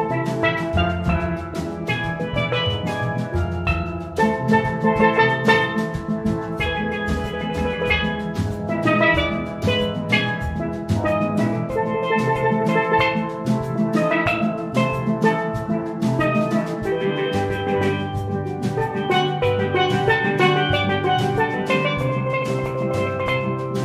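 Steel band playing: several steelpans struck in a quick, busy run of melody and chords, with a drum kit keeping the beat.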